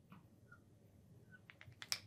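Faint taps and a couple of short squeaks of a marker drawing a box on a glass lightboard, with a few sharper small clicks near the end.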